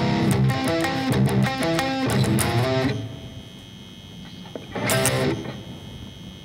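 Gibson electric guitar tuned down to drop C, playing a verse riff of low chords that is cut off abruptly about three seconds in. A short double hit of a C power chord with the open low string follows near the end.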